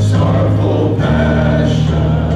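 Live praise and worship band playing, with voices singing together over keyboard, guitars and drums; the sustained bass note drops to a new pitch about halfway through.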